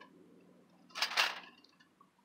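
Thin aluminum windscreen plates rattling and clinking against each other for about half a second as the folding windscreen is flexed open, a second into an otherwise quiet stretch.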